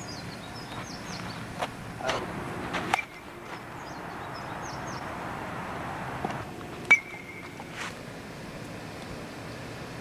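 Outdoor background with faint bird chirps and a few handling knocks, and one sharp metallic clink about seven seconds in that rings on briefly.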